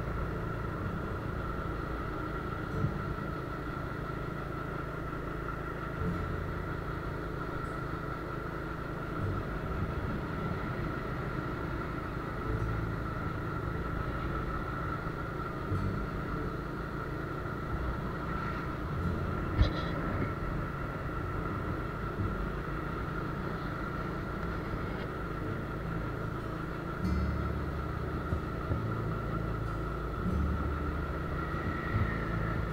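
Motor scooter running steadily along the road, its engine and road noise mixed with a low rumble of wind on the microphone and a steady high whine. One sharp click about two-thirds of the way through.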